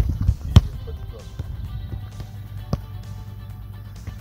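Football kicked on a grass field: a sharp thud about half a second in, the loudest sound here, and a smaller one near three seconds in. Low wind rumble on the microphone throughout, with background music.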